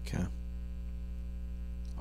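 Steady electrical mains hum in the microphone and recording chain, a low buzz with evenly spaced overtones, during a gap in the talk. A brief voice sound comes just after the start.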